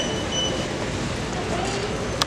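Steady background din of a store, with a quick run of short, high electronic beeps that stops about half a second in, and faint voices.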